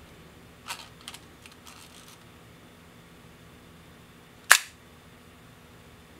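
Ihagee Exakta VxIIb's cloth focal-plane shutter, set to bulb, with a few light mechanical clicks from handling the camera in the first two seconds, then one sharp, loud shutter clack about four and a half seconds in.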